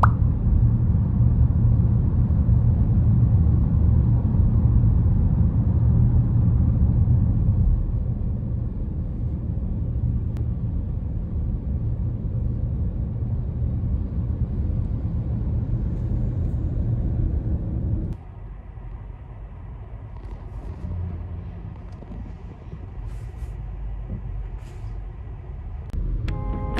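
Car moving along a road, heard from inside the cabin: a steady low road and engine rumble. About eighteen seconds in it drops abruptly to a quieter cabin hum, with a few faint clicks near the end.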